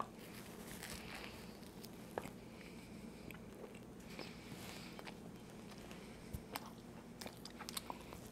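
Faint crunch of a bite into a toasted-bread fried bologna sandwich, followed by quiet chewing with scattered small crunches and mouth clicks, a few more of them near the end.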